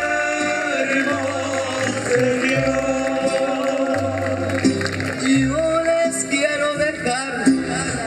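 Mariachi band playing an instrumental interlude of a ranchera: violins carry the melody with a wide vibrato over guitar strumming and a deep bass line stepping from note to note.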